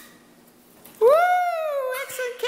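Rubber squeaky dog toy squeezed, giving one long high squeak that rises and then slowly falls in pitch, starting about a second in.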